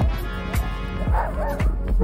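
A puppy gives a short yip a little over a second in, heard over background music.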